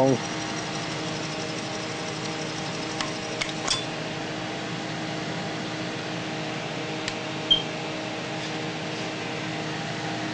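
Steady mechanical hum and whir, fan-like and even in pitch, from a running Altair 8800b computer with its 8-inch floppy disk drive opened up. A few faint clicks come about three and a half seconds in and again after seven seconds.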